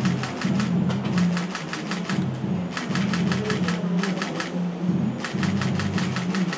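Camera shutters firing in rapid bursts of clicks, several bursts overlapping, over background music with a low bass line.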